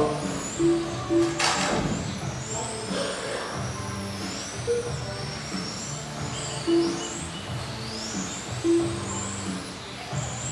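High-pitched whine of several 1/10-scale electric touring cars with 21.5-turn brushless motors, rising and falling as they accelerate and brake around the track, over background music. A single sharp knock about a second and a half in.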